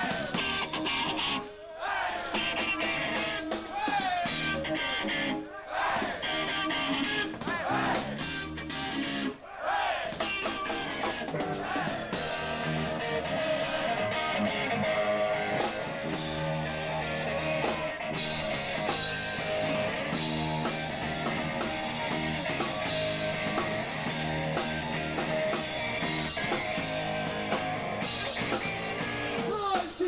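A live rock band with electric guitar, bass and drum kit playing loudly. For the first ten seconds the riff stops and starts in short sharp breaks, then the band plays on without a break.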